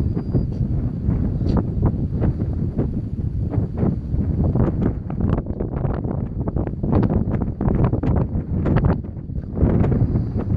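Wind buffeting the microphone: a loud, gusty rumble that rises and falls throughout.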